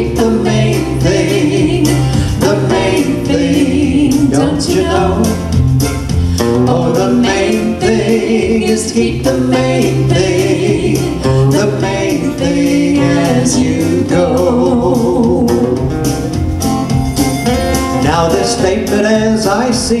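A man and a woman singing a country-style song into microphones over a recorded instrumental backing track with guitar.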